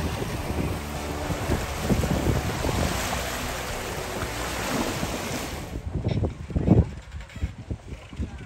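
Small wind-driven waves washing and breaking on a sandy shore, with wind buffeting the microphone. About six seconds in, the hiss of the water drops away and only a gusty low wind rumble on the microphone is left.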